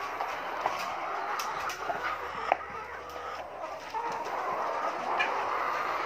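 A flock of caged laying hens clucking and calling together in an overlapping chorus, with a few sharp clicks in the first half.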